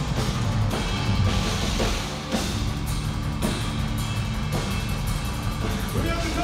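A metal band playing live and loud: distorted electric guitars over a full drum kit, with kick drum and cymbal crashes hitting through a dense, continuous wall of sound.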